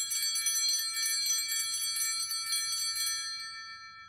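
Altar bells shaken in a rapid jangling peal for about three seconds, then left to ring out and fade. They are rung at the elevation of the chalice to mark the consecration.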